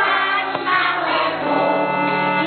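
A group of children singing a Polish Christmas carol together, with held notes over a steady musical accompaniment.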